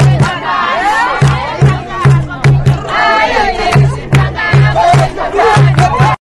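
A group of voices singing and shouting together over a hand drum. The drum beats a low pattern in clusters of quick strokes with short breaks between them.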